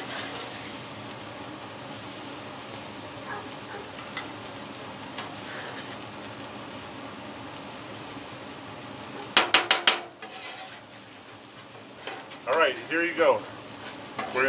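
Calamari and shrimp frying on a hot griddle top: a steady sizzle. About nine seconds in comes a quick run of sharp clacks, after which the sizzle is quieter.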